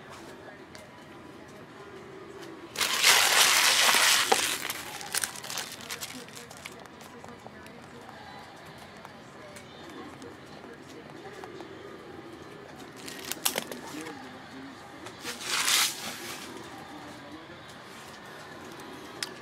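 Foil trading-card pack wrappers crinkling as they are crumpled, in one loud burst about three seconds in lasting over a second, and a second, shorter crinkle near the end.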